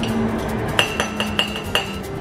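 Metal spoon clinking against a ceramic mug: about five quick light taps in the second half, each with a short ringing note.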